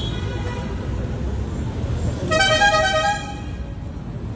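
Steady rumble of street traffic, with a vehicle horn honking once for about a second just past the middle; a fainter horn fades out near the start.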